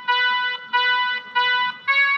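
Casio SA-5 mini keyboard playing a bhajan melody one note at a time, with one finger. The same note sounds three times with short gaps between, then a higher note near the end.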